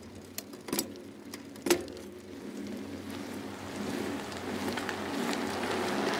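End-card sound effect for a rolling logo badge: a few sharp clicks, then a rushing, rolling noise that swells steadily louder.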